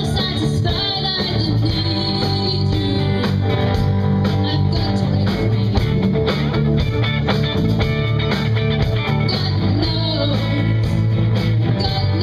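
Live rock band playing: two electric guitars, bass guitar and drum kit with a steady beat, and a woman singing.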